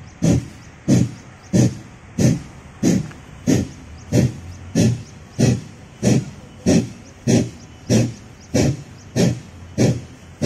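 Kapalabhati breathing: a person's short, forceful exhalations through the nose, evenly paced at about one and a half a second, some sixteen sharp puffs of breath.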